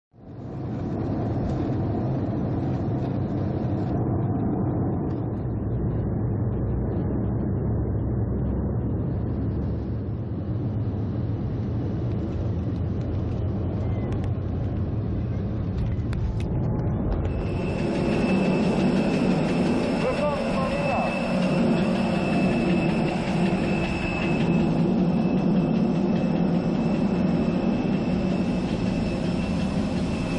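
Cabin noise inside an Airbus A320-family jet airliner: a steady low rumble of engines and airflow. About seventeen seconds in, the engines get louder, with a high steady whine, as the plane rolls along the runway after landing.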